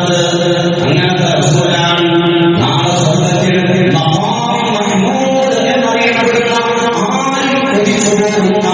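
A man chanting Arabic recitation in long, melodic held phrases.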